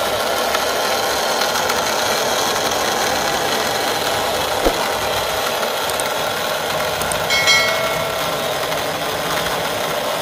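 Small DC gear motor of a napkin dispenser running steadily, driving its spring-loaded feed mechanism. A single click comes about halfway through, and a brief high chirp a couple of seconds later.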